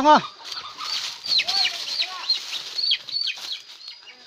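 A chicken calls once loudly at the start, then short, high, falling chirps repeat quickly for about three seconds.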